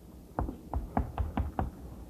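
Chalk on a blackboard: a quick run of sharp taps and short strokes as a word is written, starting about half a second in.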